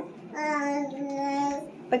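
A voice singing one long held note that steps down to a slightly lower pitch about a second in, then stops; a new sung phrase begins right at the end.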